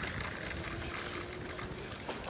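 Low outdoor noise of wind and handling on a moving phone microphone, with a faint steady hum through the middle.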